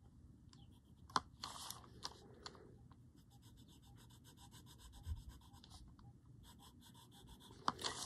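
White charcoal pencil rubbing on a paper tile in faint, scratchy strokes, with a sharp click about a second in.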